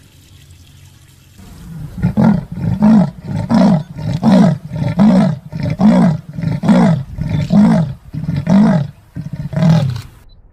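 Leopard giving its sawing call: a steady series of about ten loud, rasping grunts, roughly one and a half a second, starting about a second and a half in.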